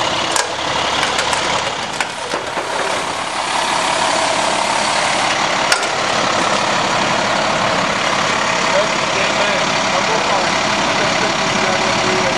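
A vehicle engine idling steadily, with a few sharp clicks about half a second, two seconds and six seconds in.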